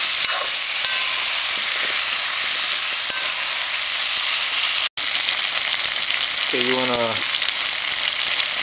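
Peeled eddoe chunks sizzling in hot oil with curry spices, with a spoon stirring them and clicking against the pan a few times near the start. The sizzle cuts out for an instant just before five seconds in.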